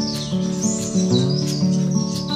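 Background music of held instrumental notes with a light steady beat, with high bird chirps gliding over it.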